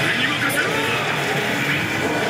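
Oshi! Bancho 3 pachislot machine's game audio: character voices and music from its animated presentation, over the constant dense noise of a pachislot hall.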